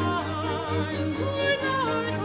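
Soprano singing a baroque opera seria aria in Italian, holding notes with wide vibrato, over a period-instrument accompaniment of baroque strings and harp.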